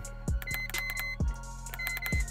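Three short high electronic beeps, the second the longest, with soft button clicks, as the arrow key of an iCarsoft CR Pro scan tool is pressed to scroll its menu; quiet background music underneath.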